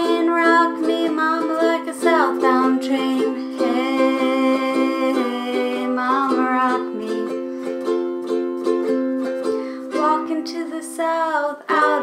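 Ukulele strummed steadily through an instrumental passage between sung verses, ringing chords in a small room.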